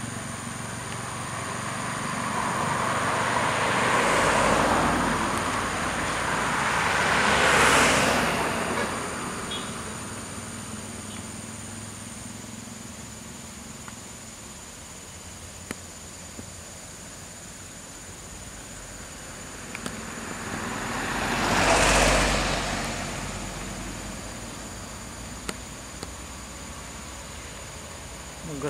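Tour bus engines labouring along a winding mountain road, with a steady low engine drone. Three passing swells come at about four, eight and twenty-two seconds in, each rising and fading away.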